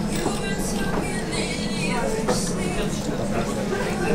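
Indistinct background voices over faint music, with no single sound standing out.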